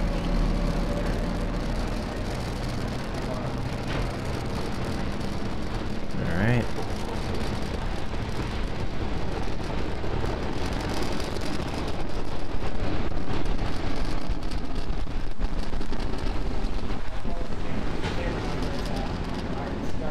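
Falcon 9 first stage's nine Merlin engines firing during ascent, a dense, steady rocket rumble that grows louder about twelve seconds in.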